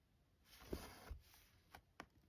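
Faint rasp of two strands of DMC cotton floss being drawn through 14-count Aida cloth, starting about half a second in and lasting under a second, then a small tick near the end.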